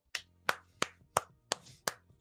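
A person clapping hands: six sharp, evenly spaced claps at about three a second.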